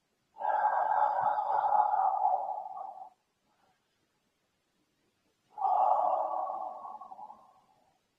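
Two long audible out-breaths from a man exerting himself while shaking his raised arms and legs, each starting sharply and fading out over two to three seconds.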